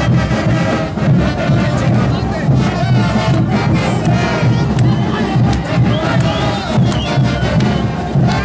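Tinku dancers' group shouts and cries over loud festival band music with a pulsing beat.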